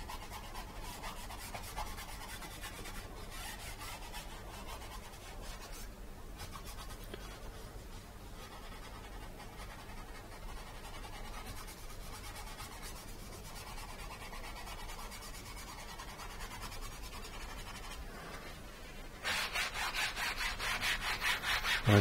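Foam sponge brush rubbing a thin acrylic wash across a stretched canvas, soft and steady. About three seconds before the end, a much louder, brisk back-and-forth rubbing on the canvas starts, several strokes a second.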